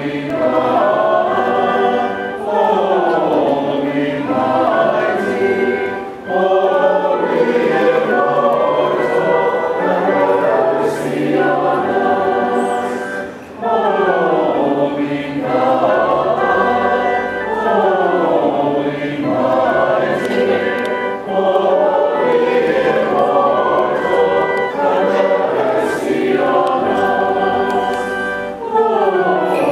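A choir singing a slow Greek Orthodox Holy Friday hymn in long phrases, with short breaks between phrases.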